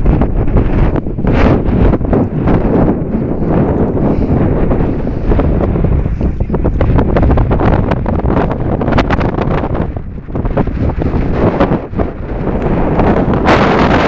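Wind buffeting the microphone on an exposed mountain summit, loud and rumbling in uneven gusts, easing briefly about ten seconds in.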